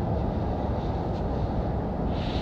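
EMD SD60E diesel-electric locomotives approaching, a low, steady rumble.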